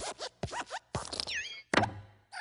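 Cartoon sound effects of the Pixar Luxo Jr. desk lamp hopping on the letter I: a quick series of springy creaks, squeaks and small thumps, some squeaks gliding in pitch, and the loudest thump near the end as the lamp squashes the letter flat.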